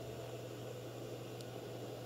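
Faint, steady background hiss with a low constant hum: room tone with no distinct events.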